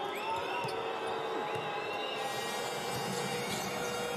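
Live basketball game sound in an arena: a steady crowd murmur, with a few short high sneaker squeaks on the hardwood court and a ball being dribbled.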